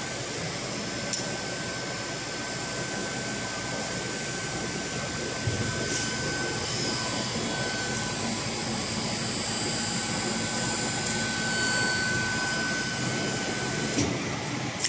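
A Suntech textile machine running under test: a steady mechanical whir with a constant high whine, growing slightly louder about ten seconds in. It starts up just at the opening and stops at the end.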